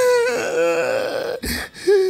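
A man's long, drawn-out wailing cry that fades out, followed by a shorter wavering wail near the end.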